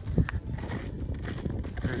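Footsteps on snow-covered lava rock: a quick, irregular run of crunching steps, with a sharper knock just after the start.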